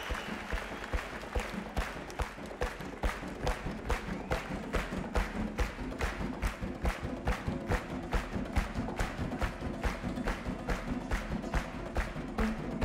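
Two acoustic guitars playing flamenco-rock: a steady percussive strum-and-body-slap rhythm of about three to four strikes a second, with ringing guitar notes over it.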